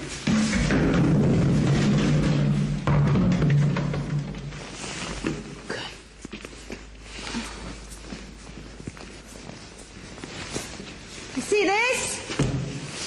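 A low, steady rumble for about the first four seconds, fading into faint scattered knocks and thuds.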